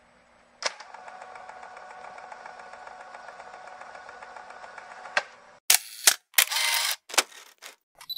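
Mechanical camera sound effects. A steady whir with fine, rapid ticking runs for about four and a half seconds, starting and ending with a click. Then comes a run of loud, sharp shutter-like clicks and rasps near the end.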